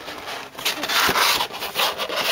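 Cardboard packaging rubbing and scraping as it is handled and pulled from the figure's box, in a few noisy surges.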